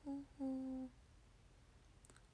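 A woman's voice making two short hummed "hō" sounds of acknowledgement, the second longer and held at a steady pitch.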